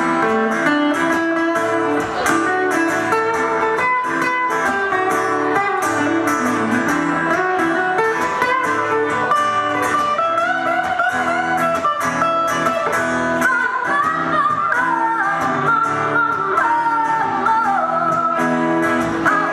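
Live song played on two acoustic guitars, steady strumming and picking, with a woman singing the melody.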